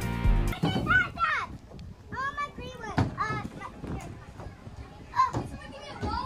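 Background music cuts off about half a second in, followed by children's high voices calling out in short bursts, with a single knock about three seconds in.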